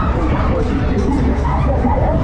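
Noise on board a spinning fairground ride at speed: fairground music and crowd chatter over a steady low rumble.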